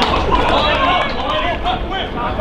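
Several men's voices shouting and calling out over one another during football play, with a steady low rumble underneath.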